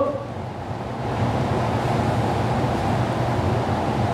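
Steady low hum with an even hiss: background room noise.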